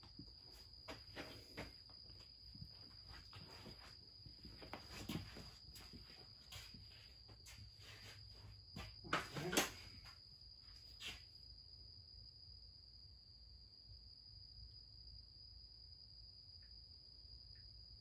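Faint clicks and knocks of a caliper and hand tools being handled, with footsteps, over a steady faint high-pitched whine; one louder scrape comes about nine seconds in. After about eleven seconds only the whine is left.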